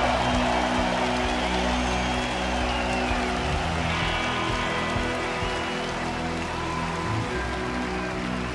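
Live band playing an instrumental passage of an electronic synth-pop song: held synthesizer and bass tones under a dense, hissy texture, with no singing.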